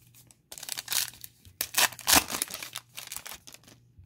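A foil trading-card pack being torn open and its wrapper crinkled: a run of sharp rustling tears, the loudest about two seconds in.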